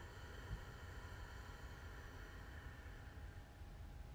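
Faint hiss of a slow exhale through the nose in ujjayi breathing, fading over the first few seconds, over a steady low rumble.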